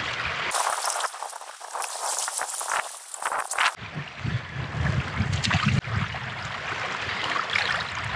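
Shallow seawater trickling and splashing around hands working a fish in the water. A bright hiss fills the first few seconds, then gives way to irregular low rumbles and small splashes.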